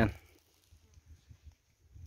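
Near silence: faint outdoor background in a pause between a man's sentences, with the tail of his voice right at the start.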